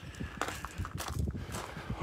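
Footsteps of a person walking up a slope outdoors: a series of irregular scuffing steps on the ground.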